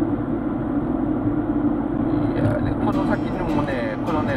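Steady road and engine noise inside a moving car's cabin, a constant low drone, with speech coming in over it in the last second or so.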